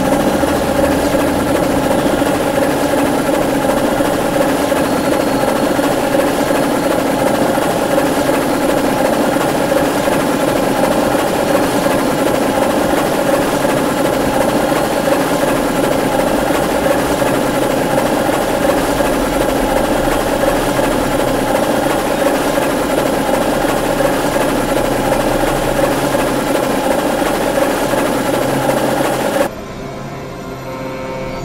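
Experimental electronic noise drone: a loud, dense wall of many steady held tones over a hiss, unchanging in pitch. It drops away suddenly just before the end, leaving quieter music.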